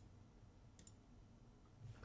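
Near silence with a few faint computer mouse clicks: one at the start and a quick pair just under a second in.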